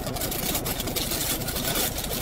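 Steady low engine hum heard inside a car's cabin, with irregular crackling over it.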